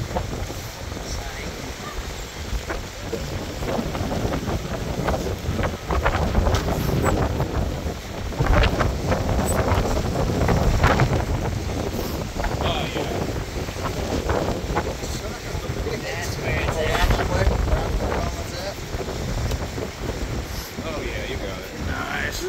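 Wind buffeting the microphone: a loud, uneven low rumble, with indistinct voices in the background.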